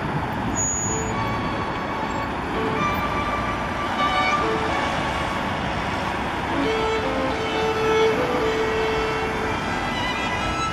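Steady city road traffic: cars and vans passing on a busy street, with background music faintly over it and a few held notes near the end.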